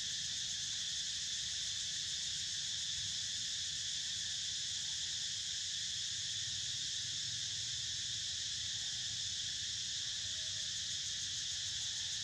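Steady, high-pitched chorus of insects droning without a break, with a faint low rumble beneath.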